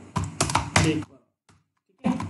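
Computer keyboard keys pressed several times in quick succession as a line of code is pasted in the editor, over a spoken word.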